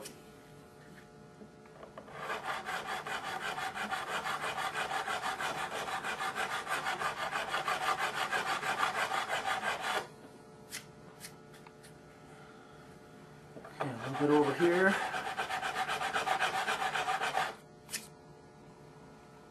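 A fret file rasping back and forth across a guitar fret wire in quick, rhythmic strokes, rounding the fret's top back into a crown after levelling. It files for about eight seconds, stops, and after a few light clicks starts again for a shorter run near the end.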